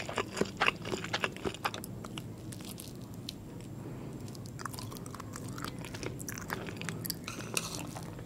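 Close-mic chewing mouth sounds: a quick run of sharp wet clicks in the first two seconds, then quieter chewing with a few scattered soft clicks.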